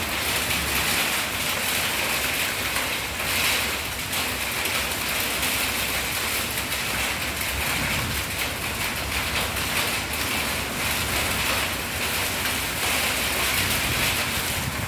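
Heavy rain pouring down steadily in a windstorm, an even hiss of rain with wind rumbling and gusting underneath.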